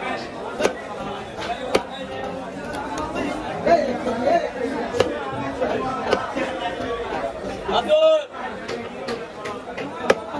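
Knife blade knocking on a wooden chopping block as fish is cut into steaks, sharp irregular knocks every second or so, over continuous chattering voices. A short pitched call stands out near the end.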